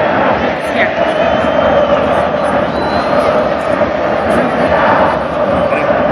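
Large stadium crowd of football supporters, thousands of voices shouting and cheering together in a dense, steady mass of sound.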